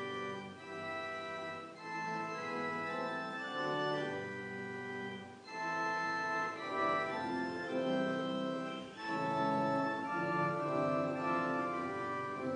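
Church organ playing slow sustained chords in short phrases, with brief breaks about two, five and a half and nine seconds in: the music for the appointed psalm.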